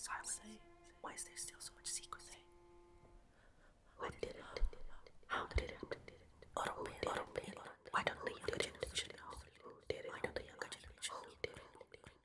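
Whispered voices, breathy and without pitch, growing dense about four seconds in. A held musical note sounds under the whispers for the first three seconds and then stops.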